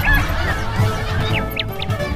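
Comic sound effects over background music with a steady low beat: a short run of rising-and-falling honking calls at the start, then a few quick falling squeaks about a second and a half in.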